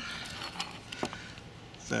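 A few faint, sharp clicks of a small screwdriver and wires being handled at a charge controller's terminal block, over a quiet steady background.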